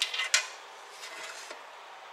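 Two light metallic clicks about a third of a second apart, then faint room noise.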